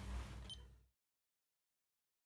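An Osypka PACE 101H external pacing box giving short high beeps about 0.7 s apart, one beep per pacing pulse at its set rate, faint over a low room hum. The sound cuts off abruptly about a second in.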